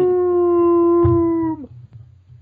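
One long howl held on a steady pitch, sagging slightly and stopping about three-quarters of the way through.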